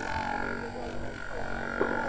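Mebak 3 percussion massage gun running at its highest setting, its head pressed into the heel of a socked foot: a steady motor buzz with a thin high whine.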